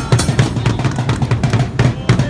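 Drums beaten in a fast, steady beat, deep bass-drum hits with sharper snare strokes, one strike near the end louder than the rest.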